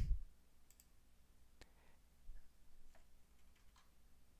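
Quiet room tone with a few faint, sharp clicks spaced about a second apart.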